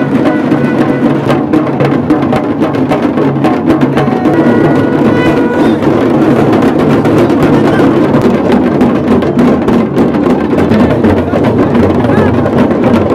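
A band of rope-laced dhol drums and large brass hand cymbals played together in a loud, fast, continuous beat, without a break.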